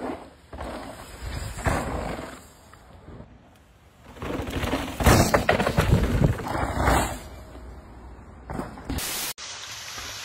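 Mountain bike tyres skidding and tearing through loose dirt on berm turns, heard as two rushes of gritty noise, the longer one about five to seven seconds in.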